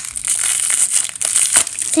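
Crinkly, plastic-lined wrapper of a LOL Surprise toy packet crumpling and tearing as it is pulled open by hand: a dense, bright crackle made of many sharp crinkles.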